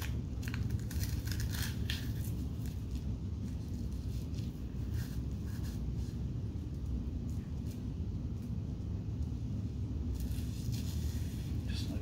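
Light rustling, scraping and clicks of a fabric strap being threaded through the buckle of a humeral fracture brace and pulled snug. The handling sounds cluster in the first two seconds and again near the end, over a steady low room hum.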